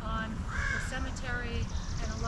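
A single short, harsh bird call about half a second in.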